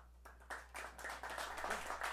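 Audience applause, breaking out about half a second in after a near-silent pause and building quickly.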